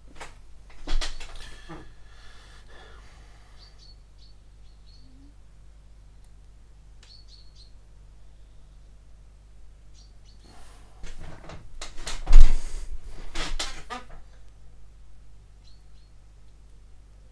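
Hands and metal tweezers handling small photo-etched brass parts on a cutting mat: a brief rustle about a second in, then a longer stretch of handling noise near the end with a thump at its loudest. Faint short high bird chirps come now and then in the quieter stretch.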